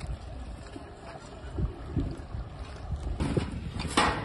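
Wind buffeting the microphone outdoors: a steady low rumble, with a few dull thumps and a sharp knock near the end.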